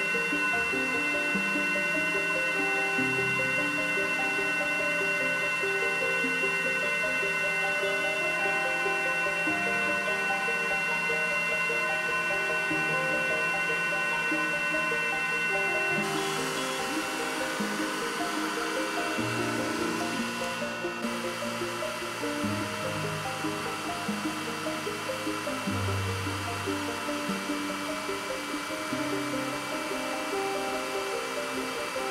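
Background music over the steady fan whir of an xTool M1 laser engraver engraving a glass. About halfway through, a steady high whine stops and a broader hiss carries on under the music.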